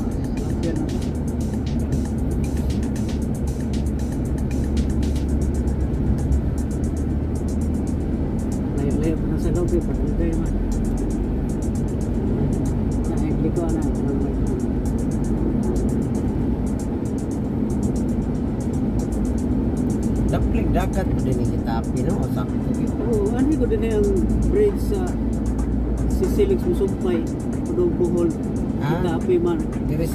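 Steady engine and road drone of a car heard from inside the cabin while driving, with background music and indistinct voices over it.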